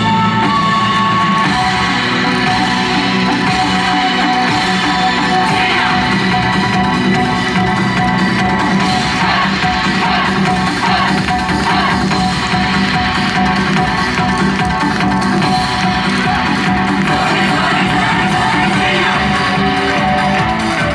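Yosakoi dance music played loud and continuously over outdoor PA loudspeakers.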